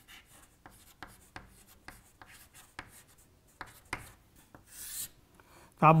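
Chalk writing on a chalkboard: a run of short scratchy strokes and taps, with one longer stroke about five seconds in, as when underlining a word.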